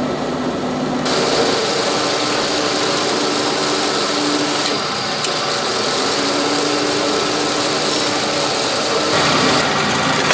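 Cincinnati mechanical sheet-metal shear running, a steady machine hum and whir; about a second in, a louder hissing whir joins and runs on.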